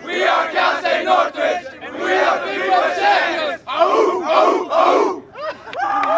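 Soccer players shouting and cheering together as a group in loud repeated bursts, many voices overlapping, with short breaks between the bursts.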